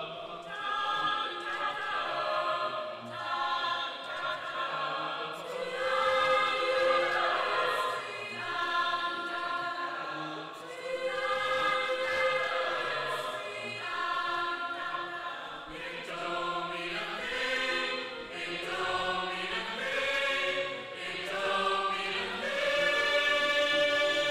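Mixed choir singing sustained chords in phrases that swell and ease every few seconds, loudest near the end.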